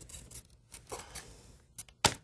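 Faint rubbing, scraping and light clicks of flat linkage plates being worked by hand onto the pivot pins of a four-bar linkage teaching model.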